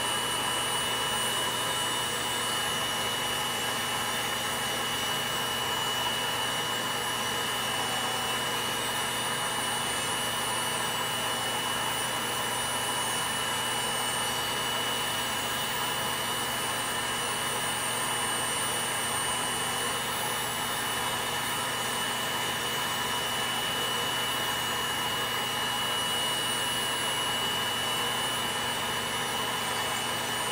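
Electric podiatry nail drill with a rotary burr running steadily, a constant high whine over a rushing hiss, as it grinds thickened toenails down to thin and smooth them.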